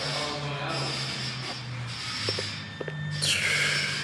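Cardboard box and plastic packaging rubbing and scraping as a scale-model car in an acrylic display case is drawn out of its box, with a few light clicks a little past two seconds in and a high, downward-sliding squeak near the end.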